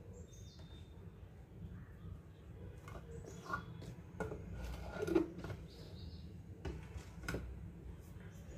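Quiet kitchen handling sounds: a few light clicks and knocks as a small salt jar and its lid are handled, the loudest a little after the midpoint. Faint short bird chirps sound in the background over a steady low hum.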